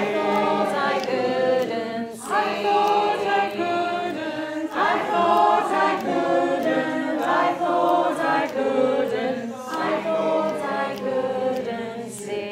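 Mixed amateur choir singing a simple round a cappella, several voices overlapping in harmony, with brief pauses for breath about two, five and ten seconds in.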